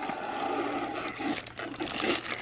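Clear plastic bag crinkling and rustling as hands pull a small projector out of it.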